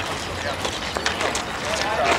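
Indistinct chatter of people talking outdoors, with a few short knocks scattered through it.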